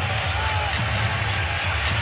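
Steady arena crowd noise during live basketball play, with music underneath.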